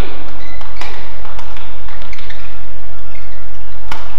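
Badminton rally: several sharp clicks of rackets striking a shuttlecock, the strongest hit just before the end, over a steady loud low background drone.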